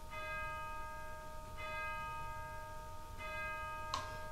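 A bell struck three times, about a second and a half apart, each stroke ringing on into the next.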